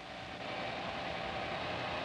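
A car driving: a steady noise of engine and road that swells slightly, heard through the hiss of an old 16 mm film soundtrack.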